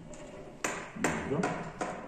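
About four sharp, light metallic clicks and pings from a fret saw frame and its fine blade being handled and clamped at the handle end.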